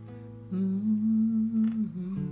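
A man humming one long held note, starting about half a second in, over the ringing of an acoustic guitar chord.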